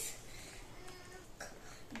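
Quiet room tone in a pause between a child's sentences, with a soft intake of breath near the end before he speaks again.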